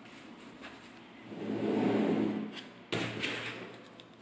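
A slab of small magnetic balls sliding across a tabletop gives a low rumbling scrape that swells about a second and a half in and fades. About three seconds in comes a sudden brief, higher scraping rasp.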